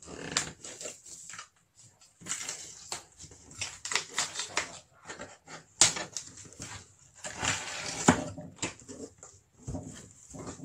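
Packing tape being picked loose and peeled off a cardboard box, in several tearing, rasping bursts with sharp snaps of tape and cardboard, the sharpest about six seconds in.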